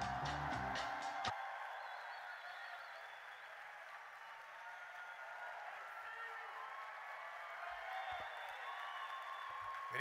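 Walk-on music that cuts off suddenly about a second in, leaving audience applause and cheering, which carries on at a lower level.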